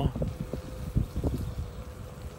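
Electric scooter riding along a paved path: wind buffeting the microphone over tyre rumble, with irregular low thumps, the strongest about a second in, and a faint steady whine from the motor.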